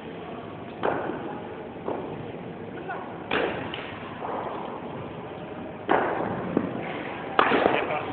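A series of sharp knocks from cricket play, ball against bat and hard surface, five in all, each trailing off briefly, the last two the loudest.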